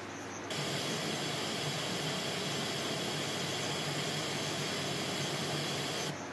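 A steady hiss of noise that switches on about half a second in and cuts off abruptly at the end, louder than the faint background hiss around it.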